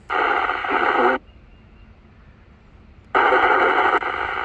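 Yaesu FT-857D speaker playing NOAA weather-channel reception: hissy, band-limited receiver audio for about a second, then cut out for about two seconds. The audio comes back a little after three seconds in as the radio is stepped from 162.400 to 162.500 MHz.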